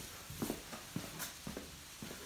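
Faint footsteps on a concrete floor, a few soft, irregular steps over quiet room tone.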